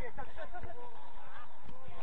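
Footballers shouting and calling to each other during play, several overlapping raised voices.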